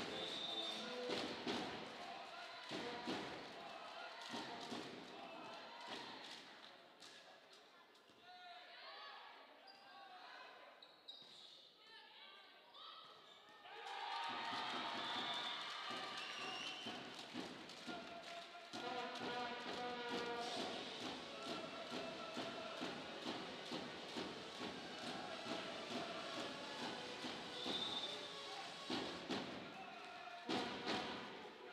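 Volleyball being played in a sports hall: repeated ball hits and thuds, with players' voices echoing in the hall. The sound drops quieter for several seconds mid-way, then picks up again sharply.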